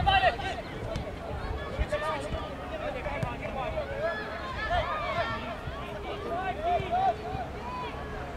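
Several faint voices of players and sideline spectators calling and chattering over one another during a soccer match, with no clear words, over a low background rumble.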